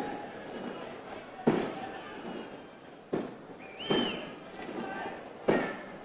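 Firecrackers bursting outdoors, four sharp bangs spaced a second or so apart, each with a short echoing tail. A brief whistle rises and falls about four seconds in.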